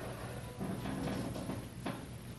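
Gym ambience: faint background music over a steady low hum, with one sharp click near the end.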